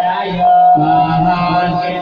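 A male voice chanting Hindu Sanskrit mantras in a slow, drawn-out recitation for a puja, with a steady held tone running underneath.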